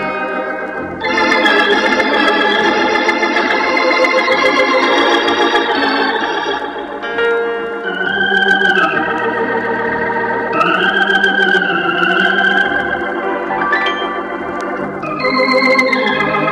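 Hammond organ playing sustained full chords, a louder chord coming in about a second in, with a wavering melody line on top in the second half.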